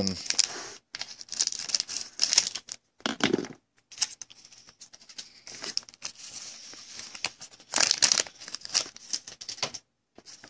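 Foil wrapper of a trading-card pack crinkling and tearing as it is opened by hand, in uneven crackly bursts that are quieter in the middle.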